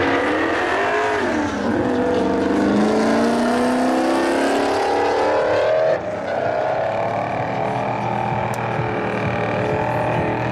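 Forced-induction engine of a fourth-generation Chevrolet Camaro drag car at full throttle down the strip, its pitch climbing, dropping once at a gearshift about a second and a half in, then climbing steadily again. From about six seconds in the engine is heard from farther away, steadier.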